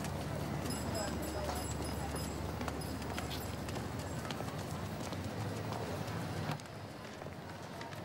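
Busy street ambience: background crowd chatter with irregular clopping steps on pavement, cutting off abruptly about six and a half seconds in.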